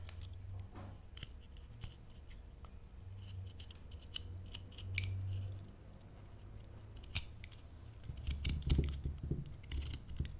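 Wood carving knife cutting small chips from a block of Ficus benjamina wood: a run of short, crisp slicing clicks. There are a few louder knocks near the end.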